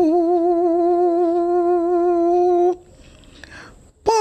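Female singer's voice holding one long note with a slight vibrato, then breaking off about two-thirds of the way through into a short pause.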